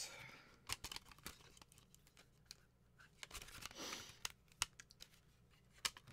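Faint handling of disc packaging: a scatter of light clicks and a brief rustle as the set is moved and put away.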